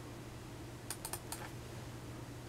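Four light clicks of a fingertip tapping a smartphone's touchscreen in quick succession about a second in, over a faint steady low hum.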